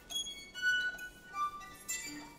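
Solo violin playing sparse, high, thin bowed notes, about four short swells each holding a few high pitches, with quiet gaps between them.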